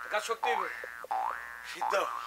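Comic sound effect: two rising whistle-like glides, each lasting about half a second, one after the other, with brief bits of speech around them.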